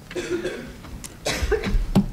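A cough, then a knock and low bumps of a chair being pulled out and sat on at the table, the knock the loudest sound, just before the end.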